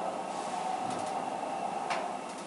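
Schindler hydraulic elevator car travelling: a steady mechanical hum with a faint whine, and two light clicks about a second apart.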